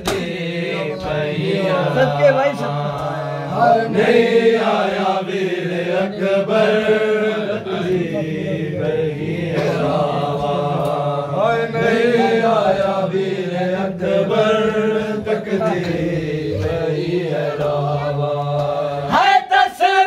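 Men's voices chanting a noha, a Shia Muharram lament, in long wavering notes over a steady low drone that stops about a second before the end.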